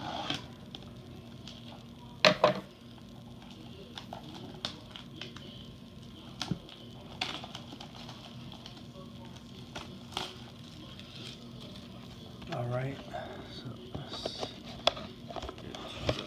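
A cardboard trading-card hobby box being handled and worked open: scattered clicks, taps and light knocks of the card box, with a sharp double knock about two seconds in.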